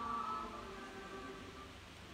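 Faint choir singing an Orthodox liturgical chant, a held phrase that tapers off about halfway through.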